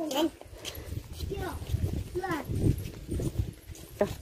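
Footsteps of people walking on an unpaved lane, with faint, indistinct talking.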